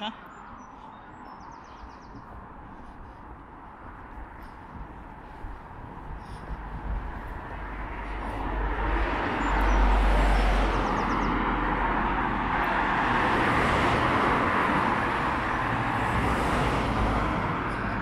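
Road traffic on a busy main road: cars passing by, with a steady wash of tyre and engine noise. Quieter at first, it swells from about seven seconds in as vehicles pass close, with a deep rumble around ten seconds, and stays loud after that.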